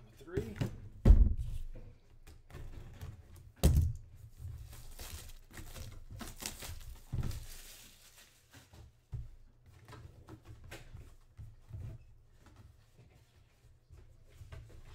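Cardboard boxes handled on a tabletop: a sharp thud about a second in and another near four seconds as boxes are set down, then a few seconds of rustling and scattered lighter knocks.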